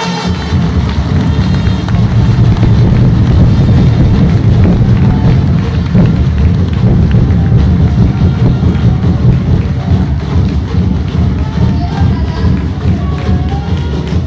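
Audience applauding after a speech ends, mixed with loud music that has a heavy low end.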